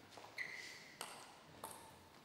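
Plastic table tennis ball bounced three times, a short ringing click roughly every 0.6 s.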